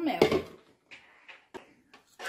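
A woman's voice finishing a word, then quiet with a brief soft hiss about a second in and a couple of faint clicks.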